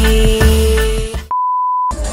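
Pop song with singing that cuts off suddenly about a second and a half in, replaced by a short, steady, high beep lasting about half a second, the single tone of a censor bleep.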